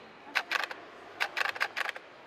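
Camera shutter clicking in quick bursts, about a dozen sharp clicks in two groups, the second group faster.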